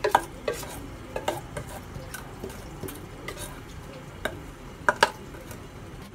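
A spatula scraping thick chocolate batter out of a metal mixing bowl into a round baking tin, with scattered light clinks of utensil on metal; the sharpest knocks come at the very start and about five seconds in.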